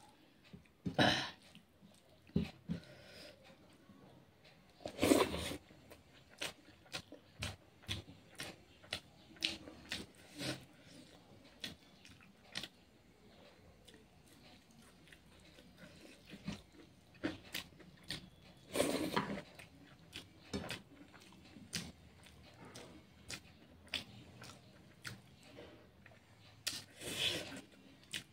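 Close mouth sounds of a person eating rice and curry with her fingers: chewing and wet smacking heard as a string of short, soft clicks, with a few louder bursts about a second in, around five seconds and near nineteen seconds.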